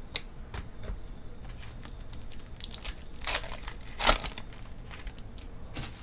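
Football trading cards being slid and flicked against one another as a stack is sorted by hand: a string of short swishes and snaps, the loudest about three and four seconds in.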